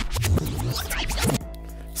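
Record-scratch rewind sound effect, quick back-and-forth scratching over background music, used as a transition; it gives way to a quieter steady beat about a second and a half in.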